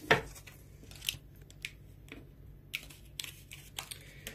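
Tarot cards being handled: a sharp card snap right at the start, then a handful of lighter card flicks and clicks spread through the rest.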